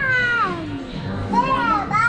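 A toddler squealing in high-pitched, wordless cries that slide down in pitch: one fades out about half a second in, and another rises and falls about a second and a half in.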